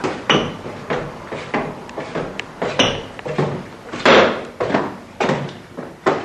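Footsteps thudding up a staircase, roughly two heavy steps a second, with the loudest step a little after the middle.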